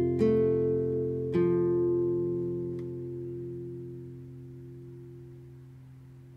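Acoustic guitar ending a song: two last chords about a second apart, left to ring out and fade away.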